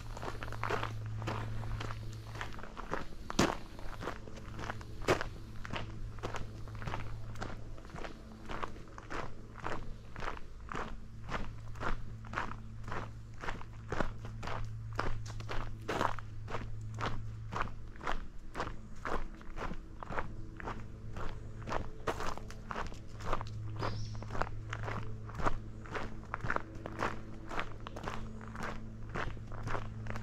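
Footsteps crunching on a gravel trail at a steady walking pace, about two steps a second.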